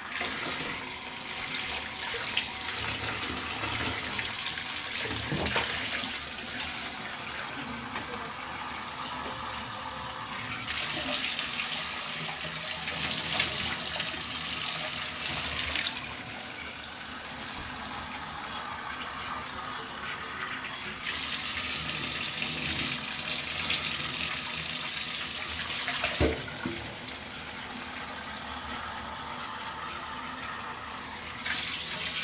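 Water running into a bathtub to rinse a wet dog, pouring and splashing on its coat and the tub. The flow gets louder twice, for about five seconds each time, in the middle and later part, and there is a brief knock near the end.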